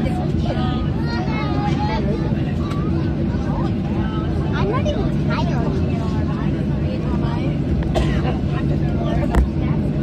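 Airliner cabin noise while taxiing: a steady low drone from the jet engines, with passengers talking in the background and a single brief thump near the end.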